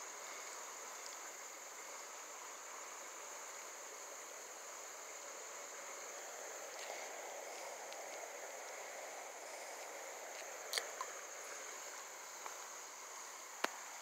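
Steady rush of a running creek with a constant high insect trill over it, and a couple of short clicks near the end.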